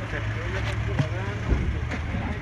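Vehicle engine idling with a steady low hum, heard from inside the cab, with faint voices and a couple of short knocks about halfway through.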